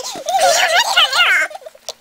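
A young person's high-pitched, wavering vocal squeal with a rapid warble, lasting about a second and a half.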